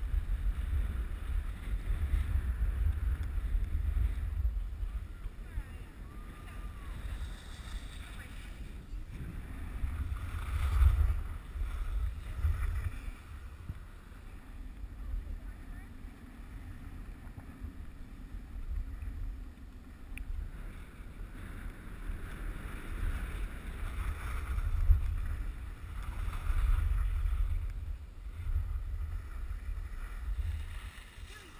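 Wind buffeting the microphone of a camera carried down a ski slope, a low uneven rumble that swells and fades, with the hiss of skis sliding on snow beneath it.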